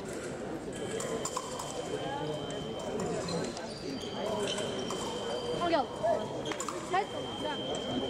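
Sports-hall ambience of a fencing venue: background crowd chatter, a steady high beep-like tone that comes and goes, and a few short rising squeaks of fencers' shoes on the piste in the second half.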